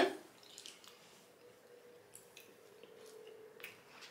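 Quiet eating sounds: spoons scooping frozen açaí from cups, with a few faint, scattered wet mouth clicks and smacks.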